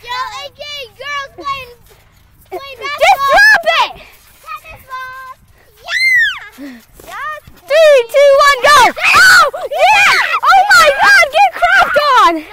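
Children shouting and yelling while they play, with a single high squeal that rises and falls about six seconds in. The yelling grows dense and loud, with several voices overlapping, in the second half.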